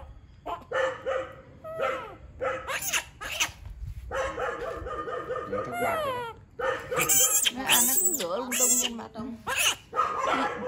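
Baby macaque giving a run of shrill, high-pitched cries in the last few seconds, mixed with a woman's voice.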